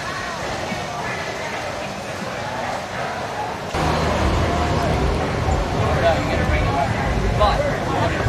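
Background chatter of a group of people talking, with no single clear voice. About four seconds in it abruptly gets louder and closer, with a low rumble underneath.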